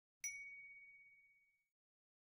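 A single bright ding sound effect, struck about a quarter second in and ringing out in one clear tone that fades away over about a second and a half. It is the cue for a 'good image' example appearing on screen.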